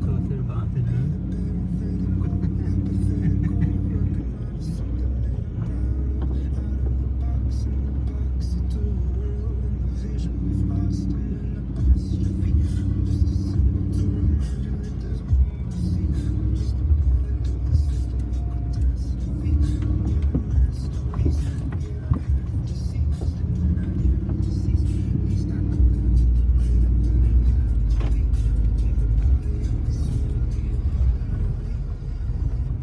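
Ford F-150 pickup heard from inside the cab, its engine and tyres running steadily through mud and slush, with music that has vocals playing over it.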